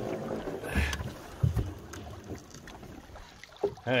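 Canoe being paddled: paddle strokes splashing and dipping in the water, with two dull knocks a little under a second and about a second and a half in.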